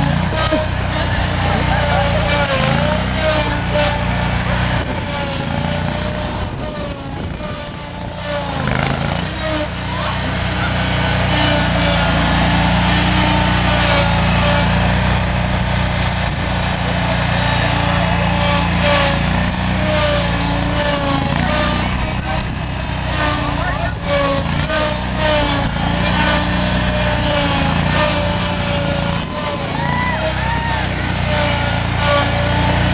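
Lawnmower engine running steadily, with people's voices chattering over it.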